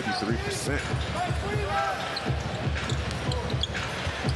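Basketball dribbled on a hardwood arena court, a run of repeated bounces under the noise of the arena.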